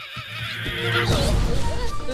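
A wavering, whinny-like cry, followed about a second in by a louder rushing noise.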